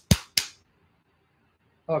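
Two sharp hand slaps in quick succession, about a third of a second apart, right at the start; a third comes just before.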